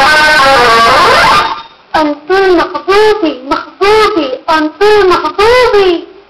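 Guitar music for the first second and a half, then cuts out. A high-pitched voice follows with a string of short sung phrases whose pitch arches up and down, with brief gaps between them.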